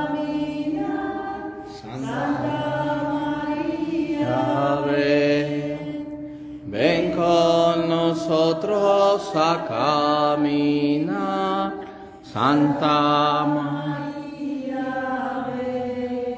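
Voices singing the closing hymn of a Mass, in long held phrases with short breaks about two, six and a half, and twelve seconds in.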